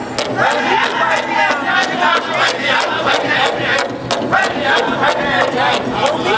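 Powwow drum group singing a fancy dance song: several men's voices in high, wavering unison over a steady drumbeat of about four strikes a second on a large shared drum.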